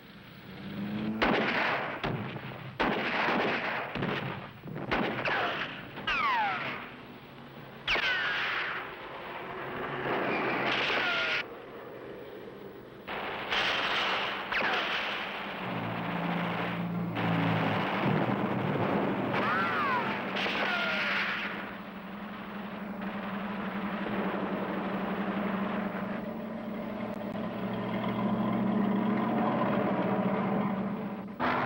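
A battle soundtrack of gunfire and explosions, several of them preceded by the falling whistle of incoming shells. From about halfway a steady low drone of tank engines takes over and runs on under the last blasts.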